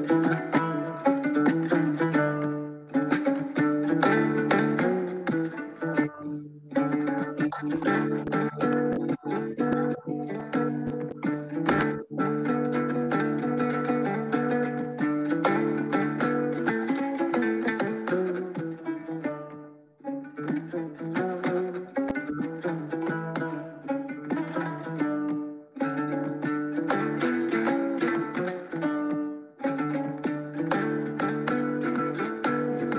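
A recording of a West African ngoni (plucked lute) playing a flowing run of soft plucked notes over a steady low drone string. The playing breaks off briefly a few times.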